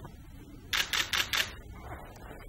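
A pen writing a signature on a heavy paper certificate: four quick scratching strokes a little under a second in, about five a second.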